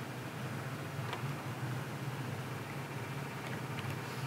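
A3 thermal laminator running, its rollers drawing in a business card in a laminating pouch: a low steady hum with a faint tick or two.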